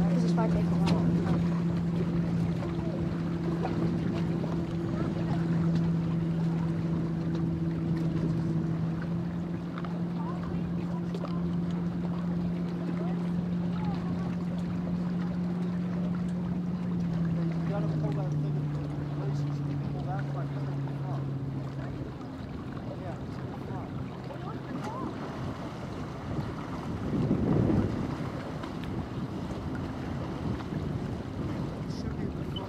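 Personal watercraft engine idling with a steady hum; its pitch drops slightly a little past halfway and the hum fades out a few seconds later. Wind and water noise run underneath, with a brief louder rush near the end.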